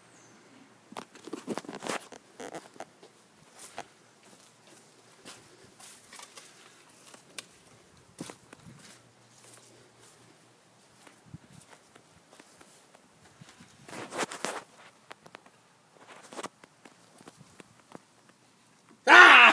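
Footsteps with scattered small knocks and scuffs, in irregular clusters that are loudest about a second or two in and again near the end.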